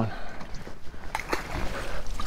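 Handling noise aboard a bass boat while a fish is culled: two short knocks a little over a second in, and a low rumble near the end.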